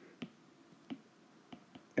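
Stylus tip tapping and clicking on a tablet's glass screen during handwriting: a few sharp, irregular clicks.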